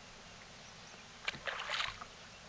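A short burst of splashing about two-thirds of the way in, starting with a sharp slap: a hooked longnose gar thrashing at the surface while being played on a rod.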